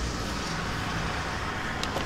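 Steady low rumble of distant road traffic in a street's background noise.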